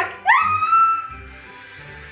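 A high celebratory squeal that rises and then holds for about a second, over background music with jingle bells that carries on quietly afterwards.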